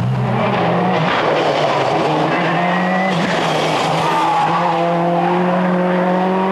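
Peugeot 206 WRC rally car's turbocharged four-cylinder engine running hard at speed on tarmac. Its pitch drops about three seconds in, as on a shift or a lift, then climbs steadily under power, with tyre squeal in the middle.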